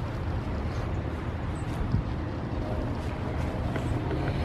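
Steady low outdoor background rumble, with a faint knock about two seconds in.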